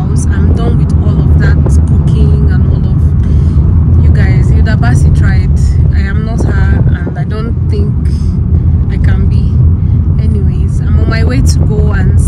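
Steady low rumble of a moving car heard from inside the cabin, with a woman talking over it.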